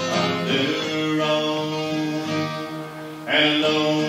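Live acoustic guitar strumming under a man singing a slow cowboy song in long held notes. A louder strum and sung phrase come in near the end.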